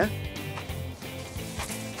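Quiet background music with steady sustained notes, and a few faint knocks.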